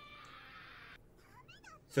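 Faint anime film dialogue heard low under the reaction: a shouted line fades out about a second in, then a high, wavering voice begins near the end.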